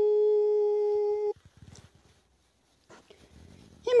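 A singing voice holds one long, steady note, then cuts off abruptly after about a second and a half. Faint small rustles and knocks follow until a voice begins near the end.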